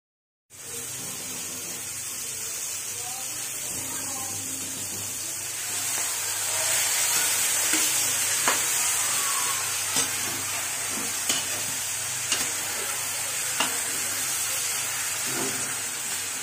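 Onion, garlic and tomato sizzling in oil in a wok, stirred with a metal ladle. About six seconds in, the sizzle grows louder as raw cubed pork goes into the pan, and the ladle knocks sharply against the wok about five times, roughly a second apart.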